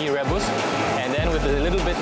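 A man speaking over background music.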